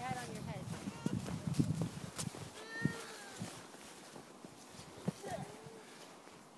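Faint, distant children's voices calling out now and then, over low rustling and rumbling noise in the first two seconds.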